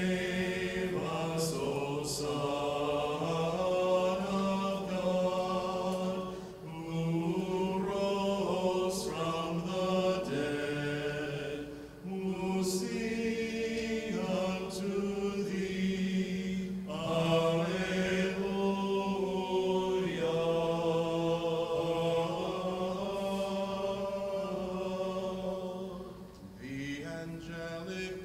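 Orthodox liturgical chant: voices singing slow, sustained phrases that pause briefly every few seconds.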